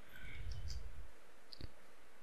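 Computer mouse clicks: a few faint ticks, then one sharper click about one and a half seconds in, over a low muffled rumble in the first second.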